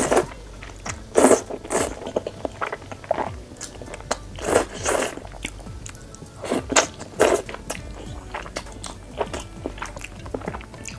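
Close-miked eating of thick, saucy noodles: loud slurps of noodles drawn into the mouth, the strongest at the very start and again a few times over the next seven seconds, with wet chewing and smaller mouth clicks in between.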